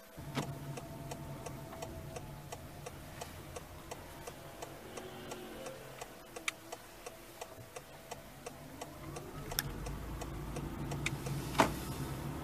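Car indicator ticking, about two clicks a second, inside the cabin of a stopped Honda Freed Hybrid over a low steady hum. A rising whine comes in about nine seconds in, and a sharper knock sounds near the end.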